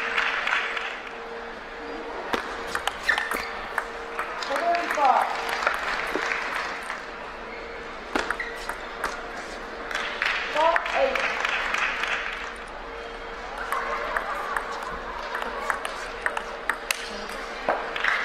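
Table tennis rallies: the ball clicking sharply and repeatedly off paddles and the table. Bursts of applause and short shouts come between points, with a faint steady hum underneath.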